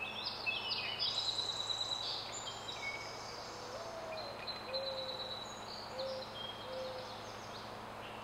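Outdoor ambience of several birds singing and chirping, busiest in the first couple of seconds. From about halfway a few short, low hooting notes come in, over a faint steady hum.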